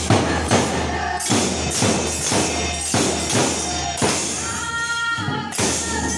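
Hand cymbals and a barrel drum playing Manipuri Holi dance music in a steady beat, about three strokes a second, the cymbals jingling on each stroke.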